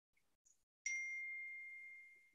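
A single high electronic ding, like a device notification chime, sounding about a second in and fading away over about a second and a half, with two faint clicks just before it.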